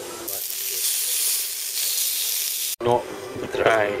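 A steady high hiss lasting about two and a half seconds, cut off abruptly, followed by a voice and laughter.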